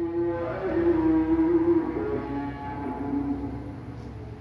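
A man's voice holding one long drawn-out chanted vowel, in the sing-song style of reading an Arabic text aloud and glossing it. The pitch steps slowly down and fades near the end.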